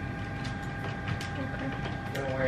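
Desktop printer running as it prints sticker sheets: a steady hum with a few light clicks.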